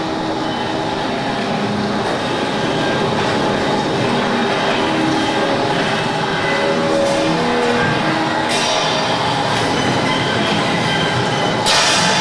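Experimental electroacoustic drone and noise music: a dense, rumbling wash of noise with short held tones that come and go. A brighter hiss swells up about two-thirds of the way in, and a louder hiss bursts in just before the end.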